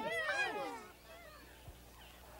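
Several high-pitched puppet character voices call out together and trail off within the first second, followed by near silence.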